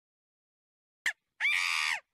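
Hanuman langur call: a brief click about a second in, then a single high, harsh call lasting about half a second.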